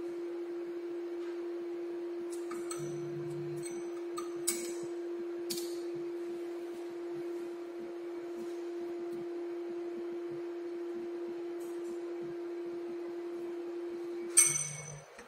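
A few light clicks and clinks of glassware as milk is drawn up with a glass pipette and rubber bulb, the sharpest about four and a half seconds in. Under them runs a steady hum-like tone.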